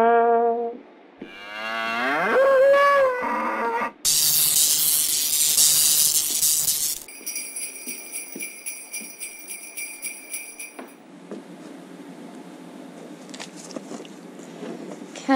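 Cartoon sound effects: a horn note ends, then a cow moos for about three seconds, then sleigh bells jingle and ringing chime tones fade out. A low steady background hum is left over the last few seconds.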